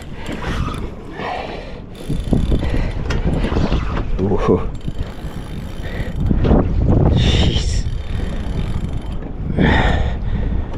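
Wind buffeting the microphone, with water washing around a fishing kayak and a spinning reel being wound against a heavy fish. There are several louder swells, about two thirds of the way through and again near the end.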